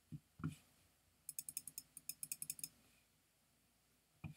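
Two soft thumps, then a quick run of about a dozen light, high-pitched clicks, about eight a second, from a computer mouse being worked.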